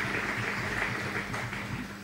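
Audience applauding after a talk ends, thinning out towards the end.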